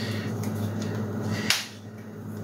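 Kitchen handling noise from a measuring spoon and a container of ground black pepper, over a steady low hum, with a single sharp click about one and a half seconds in.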